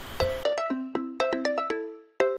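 A short electronic musical jingle: a quick run of bright, ringtone-like pitched notes that stops suddenly at the end.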